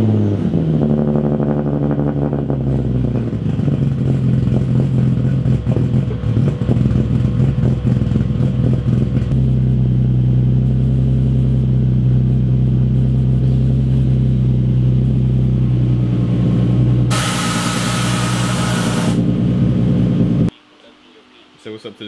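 Nissan 350Z's 3.5-litre V6 just after starting, its revs dropping from the start-up flare and settling into a steady idle. Near the end a loud hiss joins for about two seconds, then the engine shuts off abruptly.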